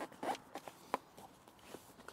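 Faint rustling and a few light clicks and taps as a Can-Am Spyder F3 seat is shifted by hand to line it up on its mounting brackets.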